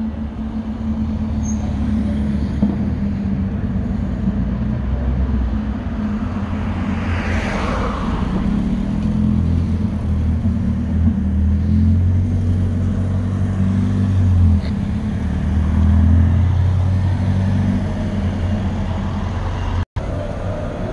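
Classic rally car engines running as the cars drive slowly past at close range: a steady low engine drone, with a rush of noise as one passes about seven seconds in and the engine note swelling again later.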